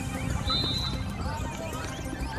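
A music track playing, with a brief high steady tone about half a second in.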